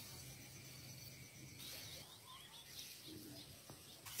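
Near silence: faint outdoor ambience with a few faint bird chirps.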